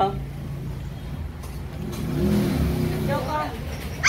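A motor vehicle's engine passing by over a steady low hum, its pitch rising and then falling about two seconds in.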